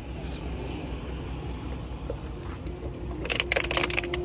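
Thin plastic water bottle crackling in a quick run of sharp clicks near the end as it is squeezed and handled, over a steady low rumble.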